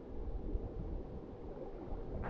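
Low, irregular sloshing of river water as a swimmer moves through it.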